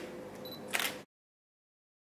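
A camera shutter fires once, a little under a second in, over faint room tone.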